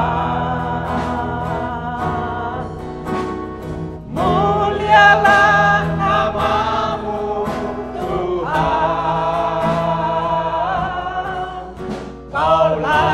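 Mixed group of older men and women singing a gospel worship song in unison into microphones, with acoustic guitar accompaniment. Sung phrases with long held notes, a new phrase entering louder about four seconds in and another near nine seconds.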